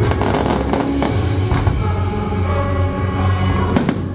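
Aerial fireworks bursting over loud show music: a quick cluster of bangs in the first second, another about a second and a half in, and the sharpest bang near the end.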